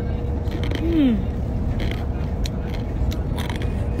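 Steady low rumble inside a moving car's cabin, with a woman's appreciative falling 'hmm' about a second in and a few short crisp crackles as she eats crackers out of a plastic bag.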